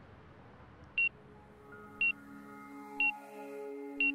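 Background music: a short high beep like a sonar ping sounds once a second over a faint hiss, and sustained low notes fade in about a second and a half in and build.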